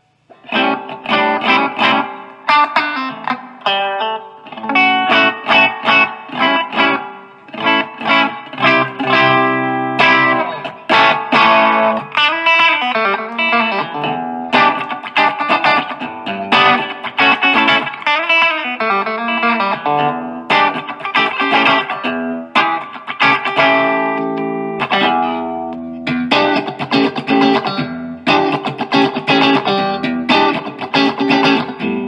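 Strat-style electric guitar played through a Marshall MG 4x12 cabinet with four Celestion speakers, the amp's drive turned up for an overdriven tone. Continuous riffs and chords start just after a brief pause at the beginning.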